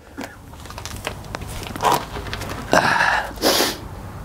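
Close body-mic noise as a man kneels down to reach under a trailer: rustling and a short breathy puff about two seconds in, then a longer, louder huff of breath near three seconds, over a steady low rumble.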